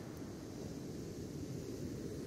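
Steady low rush of surf on a sandy beach as a wave comes in.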